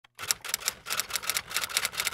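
Typewriter keys clacking in a quick run of sharp strikes, about six a second: a typing sound effect laid under on-screen title text.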